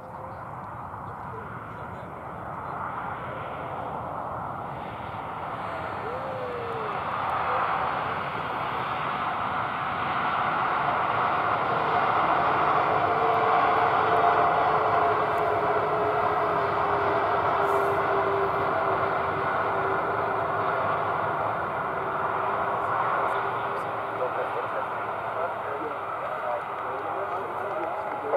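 Boeing 737-8 jet engines (CFM LEAP-1B turbofans) running as the airliner rolls past on the runway: a steady jet roar that grows louder to a peak about halfway through, then slowly fades as it moves away. A hum in the sound sinks slightly in pitch as it goes.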